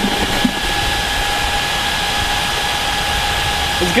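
Stationary stunt motorcycle running, a steady whirring hiss with a faint constant whine.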